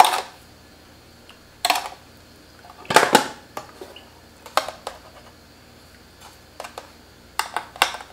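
A metal spoon scooping sugar out of a container and knocking against it and the pot, heard as a few short clinks and scrapes spread out, the loudest about three seconds in.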